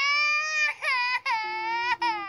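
A baby crying: a long high wail, a short break with quick catching sobs about halfway through, then another long wail.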